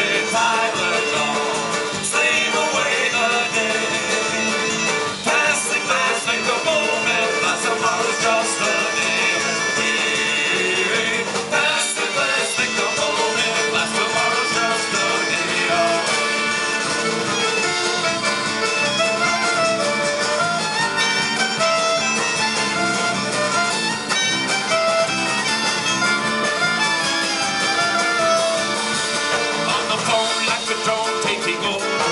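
Live Celtic folk-rock band playing: fiddle over acoustic guitar, electric bass and drum kit, at a steady, loud level.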